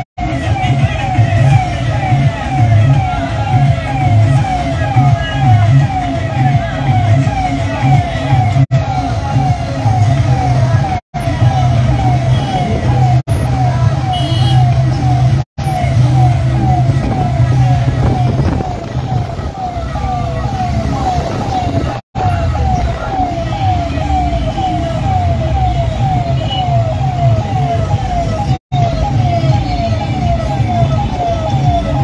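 Tractor engines running in a convoy under a siren-type horn that wails in quick falling sweeps, two or three a second. The sound drops out for an instant several times.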